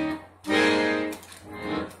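Siwa & Figli piano accordion playing held chords. One chord ends just after the start, a second begins about half a second in and fades away, and a softer chord follows near the end.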